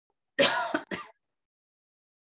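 A person clearing their throat: two short bursts close together, the first longer than the second, about half a second in.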